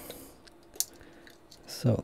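Quiet handling of jumper-wire connectors on an ultrasonic sensor's pins, with one sharp plastic click a little under a second in.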